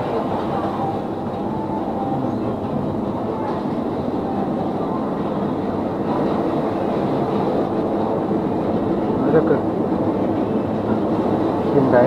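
Steady, even rumbling background noise inside a convenience store, with a short spoken word about nine seconds in and again at the end.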